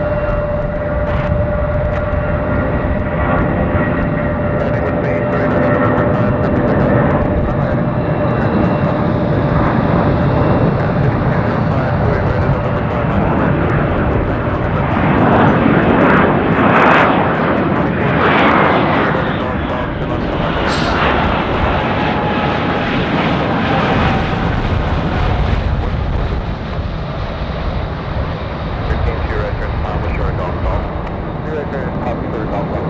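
Jet airliner engines running loudly. A steady whine sits over the engine noise for the first half, then the noise swells and peaks just past the middle as the aircraft passes, with a falling whine.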